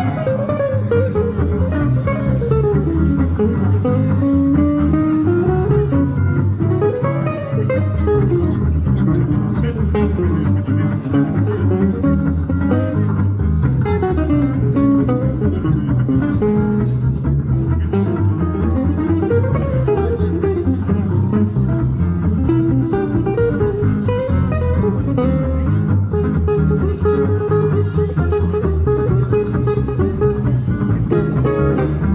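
Jazz manouche trio playing live: an acoustic guitar plays winding melodic runs over a steady rhythm guitar and double bass.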